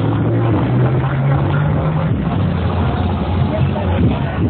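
Loud electronic dance music from a DJ sound system, dominated by deep held bass notes that shift in pitch about a second in and again about two seconds in.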